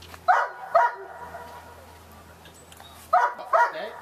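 A dog barking: two sharp barks in quick succession near the start, then a faster run of three or four barks near the end.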